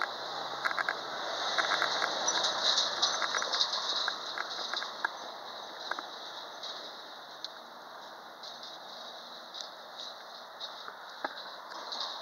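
Small dogs' paws and claws pattering on a concrete sidewalk, a string of irregular light clicks, with a louder rushing noise between about one and five seconds in.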